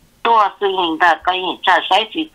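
Speech only: a person talking steadily in a thin, narrow, telephone-like voice, starting after a brief pause.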